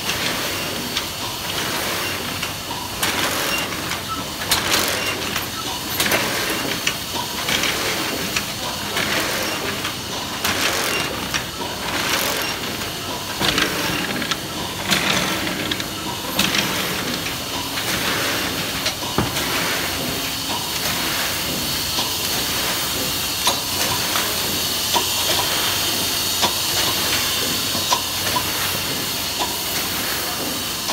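1971 Bobst SP 1260 E autoplaten die-cutting press running, its platen cycling with a regular clack about once a second over a steady hiss.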